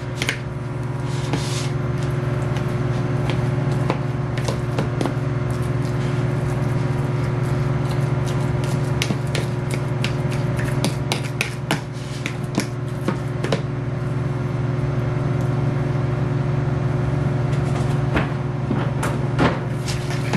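Steel fork mashing avocado in a plastic tub, with many sharp clicks and taps of the fork against the tub, over a steady low hum from a running microwave oven.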